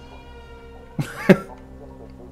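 A person coughs once, briefly, in two quick bursts about a second in, over soft steady background music.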